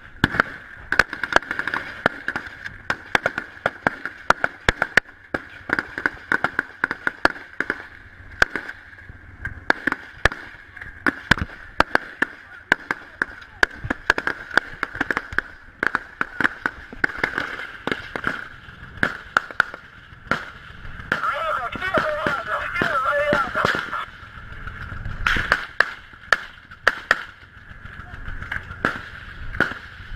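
Sustained small-arms gunfire: many sharp shots, irregular and at times in quick strings, with shouting voices briefly about two-thirds of the way through.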